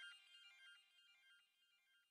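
Faint electronic music fading out: a quick run of short, high synth notes stepping up and down, growing weaker until it has almost died away by the end.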